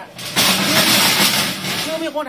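Metal truck loading ramp being dragged and shifted: a loud scraping rush that starts about half a second in and lasts just over a second.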